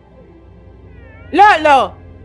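A loud two-part meow-like call, each part rising then falling in pitch, about one and a half seconds in, over soft background music.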